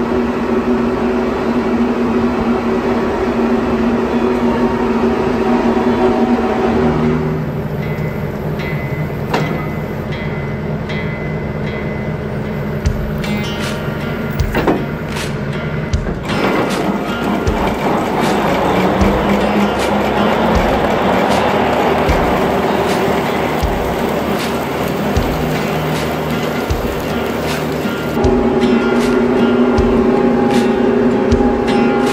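Background music over a tractor's engine running steadily as it drives a Rhino TS10 flexwing rotary mower through tall weeds. Scattered sharp knocks sound through the middle and later part.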